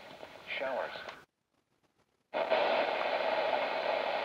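Capello NOAA weather radio speaker: a faint, distant broadcast voice, then the sound cuts out completely for about a second as the radio steps to another channel. A steady hiss of static follows on the new channel.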